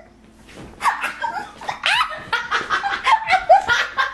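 Two women shrieking and laughing, a string of short high squeals starting about a second in.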